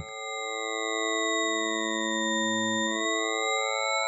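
Thorn CM software synthesizer's spectral oscillator holding an organ-type waveform, a stack of pure steady tones. Individual overtones drop out and come in at different moments as the oscillator's position steps through its waveform frames, so the tone colour changes in steps.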